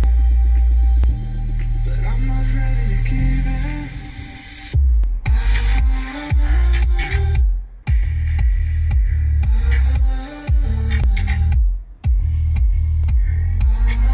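Electronic dance music played loud through an upgraded car audio system (Hertz Cento component speakers and an Infinity subwoofer), heard inside the car's cabin. A long held bass note fills the first few seconds, then a pounding bass-heavy beat kicks in with a couple of short breaks.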